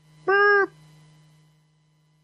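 A man's voice giving one short 'boop' of about half a second, imitating the tone a conference-call system plays when a caller drops off the line.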